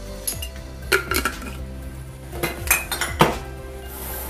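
Metal teaspoon clinking against a glass jar and a ceramic cup while instant coffee is spooned out: several sharp clinks in small clusters, with the loudest about three seconds in.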